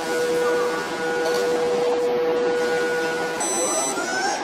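Automatic blood pressure monitor's air pump running with a steady hum as it inflates the arm cuff, stopping about three and a half seconds in once the cuff reaches full pressure; a brief high-pitched tone follows near the end.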